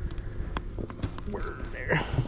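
Wooden beehive frames knocking and clicking against the box as they are shifted, a few sharp taps in the first second, with a man's low murmured voice in the second half.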